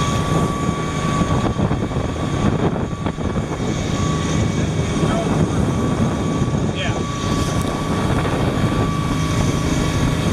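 Motorboat under way: a steady engine drone under a constant rushing noise.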